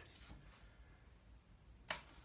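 Near silence: faint room tone, with one brief sharp click near the end.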